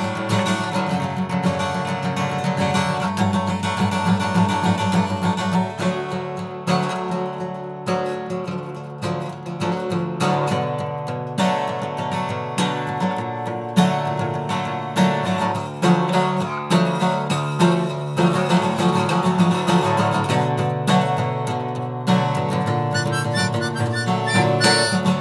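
Acoustic guitar strumming with harmonica playing over it: an instrumental passage of a song, with no singing.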